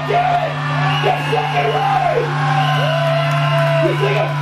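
Loud, steady low hum from the band's live amplification between songs. Over it come several drawn-out pitched wails that slide up, hold and fall away, the longest held for about a second near the end.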